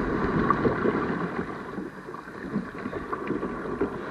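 Sea water sloshing and lapping around a camera held at the surface, uneven and rising and falling, with wind on the microphone.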